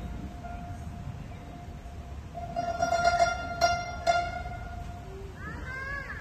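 Guzheng sounding a long held note that swells about two and a half seconds in, with a couple of sharp plucks, then fades back down. Short sliding notes follow near the end.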